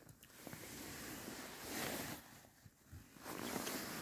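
Soft rustling of fabric inside an ice-fishing tent, rising in two swells: one from about half a second in to about two seconds, and another from a little past three seconds.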